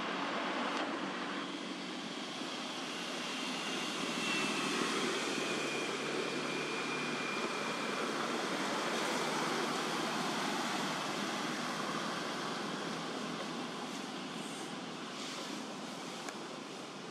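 Distant motor noise, a steady rumble and hiss that slowly swells to its loudest in the middle and then fades, like a passing vehicle.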